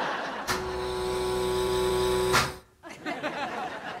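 Laboratory laser firing, as a TV sound effect: a steady electric hum with a strong buzzing tone. It switches on about half a second in and cuts off after about two seconds.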